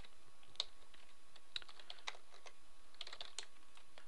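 Computer keyboard typing: quiet, irregular keystrokes clicking singly and in small clusters.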